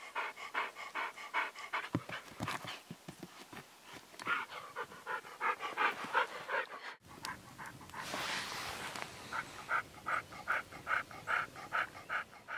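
An old husky panting rapidly, about four breaths a second, with a brief break about seven seconds in.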